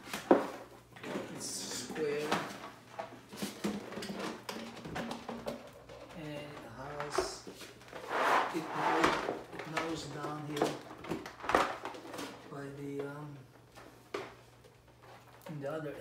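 Stiff clear vinyl (PVC) chair mat being unrolled and handled on a tile floor: irregular crackling and flexing of the plastic, with sharp knocks and slaps as it is pressed down and lifted.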